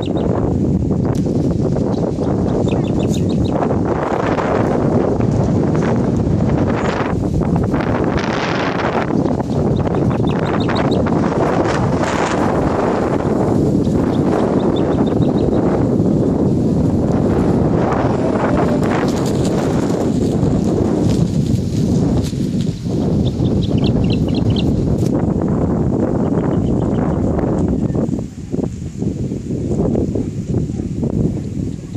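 Wind blowing hard over the microphone, a loud steady rush that eases a little near the end, with a few faint high chirps in the background.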